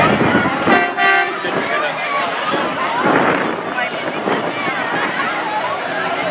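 A semi truck's horn gives one short blast about a second in, over the chatter of a crowd of spectators.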